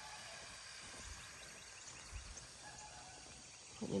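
Faint outdoor background noise with no distinct sound standing out, a few soft low thuds about a second or two in.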